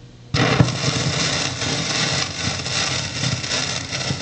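Surface noise of a 1914 Victor shellac 78 rpm record in the lead-in groove, played with a 78 stylus: loud steady hiss and crackle that starts abruptly about a third of a second in as the stylus meets the groove, with a sharp click just after.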